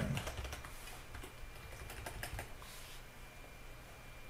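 Typing on a computer keyboard: a quick run of key clicks, busiest over the first two seconds or so, then thinning out to a few scattered keystrokes.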